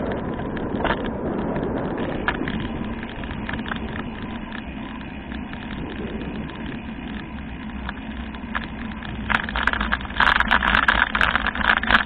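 Riding noise from a bicycle-mounted camera: a steady rumble of tyres and wind on a paved cycle track, breaking into loud crackling rattles in the last couple of seconds.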